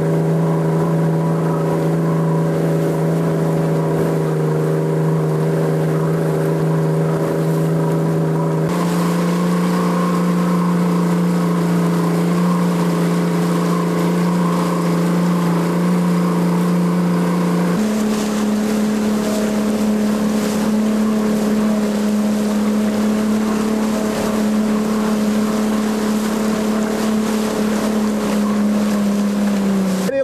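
Motorboat engine running steadily, heard from on board, a constant hum that steps abruptly higher in pitch twice, about a third and two thirds of the way through.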